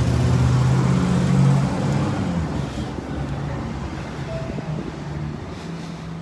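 Engine of a flatbed tow truck running as it passes close by, loudest for the first two seconds and then fading away, over steady street traffic noise.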